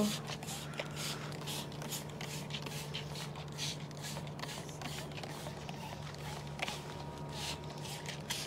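Handheld plastic trigger spray bottle spritzing liquid onto leaves again and again, short hissing sprays about two a second, with a low steady hum underneath.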